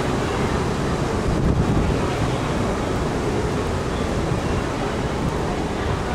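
Wind buffeting the microphone on a ship's open-sided deck, a steady rushing noise strongest in the low end.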